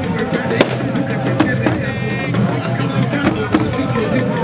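Dense crowd of many voices over drumming, with sharp drum strikes scattered through. A brief high tone sounds about two seconds in.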